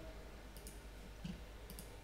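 A few faint computer mouse clicks over a low steady room hum.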